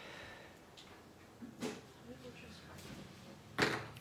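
Quiet, scratchy slitting and rustling of a craft knife cutting open the wrapping of a sticker book, with a couple of short sharper scrapes, one near the middle and one near the end.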